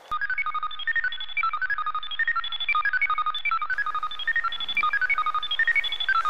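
Sci-fi computer bleeping effect for the robot wishing machine at work: a fast run of short electronic beeps hopping between high pitches, several a second, starting abruptly.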